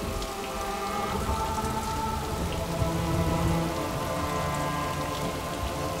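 Steady rain falling, under background score music of long held notes.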